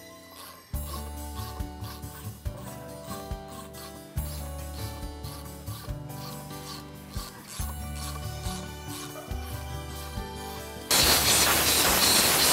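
Ratchet handle clicking and threads rubbing as a thread restorer is turned through the bolt holes of a motorcycle wheel hub, over background music. Near the end there is a loud spray hiss lasting about two seconds.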